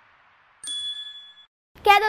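A single bright bell-like ding, a chime sound effect laid over a graphic transition. It strikes about half a second in and rings out in under a second.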